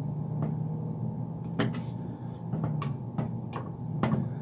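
Kitchen knife cutting small hot peppers on a wooden cutting board: several sharp knocks, irregularly spaced, as the blade strikes the board. A steady low hum runs underneath.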